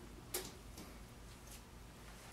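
Light clicks and taps of hand-work on a clay sculpture and its armature: one sharper click about a third of a second in, then a few fainter ones.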